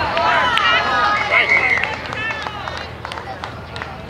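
Several voices of players and spectators shouting over one another around a tackle on the field, loudest in the first two seconds, with a brief shrill held note about a second in, then dying down.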